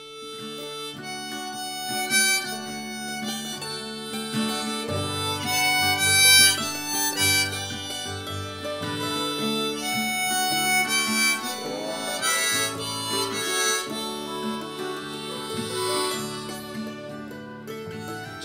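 Country-style instrumental intro: a harmonica in a neck rack plays the melody over strummed acoustic guitar, with layered mandolin, fiddle and bass parts.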